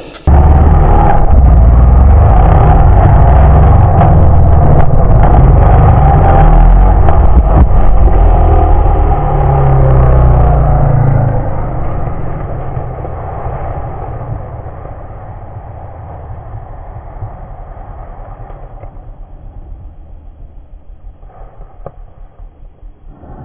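Dirt bike engine heard from a helmet camera, running loud under throttle along a trail, with the pitch rising and falling as the rider works the throttle. About eleven seconds in it drops to a quieter, low chugging run.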